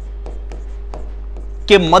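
Light taps and scratches of a pen writing on an interactive board's screen, a few short strokes a second, over a steady low hum. A man speaks a word near the end.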